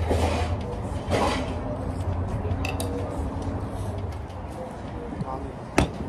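Ceramic tableware sounds, with a spoon working in a congee bowl. Near the end a plate is set down on the table with one sharp clack, over background voices.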